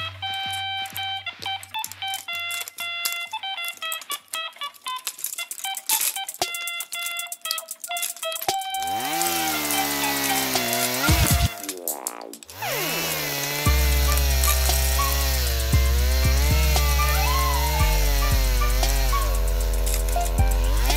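Background music: a plinking melody of short notes, changing about halfway through to wavering synth tones with a quick pitch sweep, then a heavy bass line comes in for the last six seconds.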